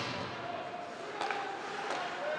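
Ice rink ambience during play: a low crowd murmur with two sharp knocks of hockey stick and puck, about a second in and near the end.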